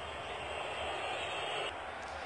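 Faint, steady background noise with a high hiss that stops shortly before the end.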